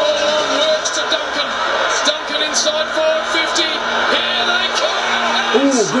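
Australian rules football highlight video playing back: background music with a long held note over an even din, and a man's voice coming in near the end.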